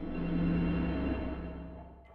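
Background music: a sustained, held chord with a low drone that fades away toward the end.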